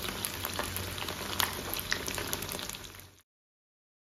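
Chicken momos frying in shallow oil in a pan: a steady sizzle with scattered sharp pops, fading and then cutting off a little after three seconds in.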